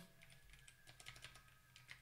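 Faint keystrokes on a computer keyboard: an uneven run of soft key clicks.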